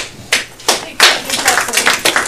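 A roomful of people clapping: a few scattered claps at first, thickening into brief applause from about a second in.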